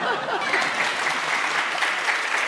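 Studio audience applauding, the clapping setting in within the first half second and continuing steadily, in reaction to a joke.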